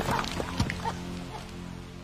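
Film score holding a low, sustained chord while the tail of a crash fades away, with a few brief high-pitched squeaks in the first second.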